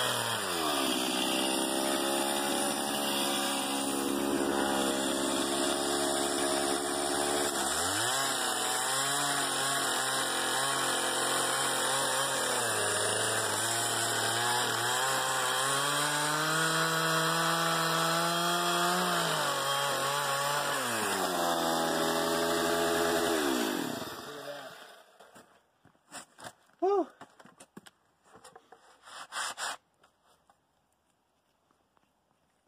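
Gas chainsaw ripping a log lengthwise into planks, its engine pitch sagging under load in the cut and rising again several times. About 24 s in the engine winds down and stops, followed by a few light knocks and a short squeak.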